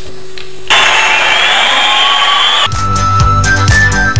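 About two seconds of loud rushing noise with gliding tones, then the talent show's theme music starting with a bass beat and held notes.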